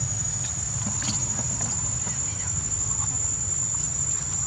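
Steady, high-pitched drone of insects over a low rumble, with a few faint short sounds in between.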